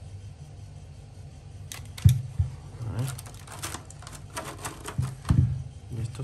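Handling noise from a Parkside 4 V cordless hot glue gun: irregular clicks and knocks of its plastic body being turned in the hands and set down on a desk mat. The loudest knock comes about two seconds in, followed by further bunches of clicks.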